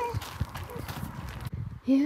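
Footsteps crunching on loose gravel at a walking pace; the sound cuts off about a second and a half in.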